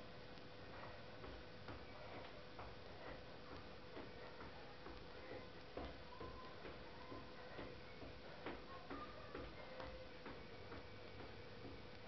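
Faint, light taps of sneakers on a rug-covered floor during quick side-to-side footwork, coming in an even rhythm of about two a second.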